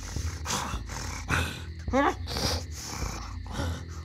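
A person voicing an angry bull with snorts and growls, including a rising vocal sound about two seconds in.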